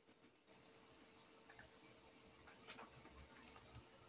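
Near silence: room tone with three faint, short clicks spread across the pause.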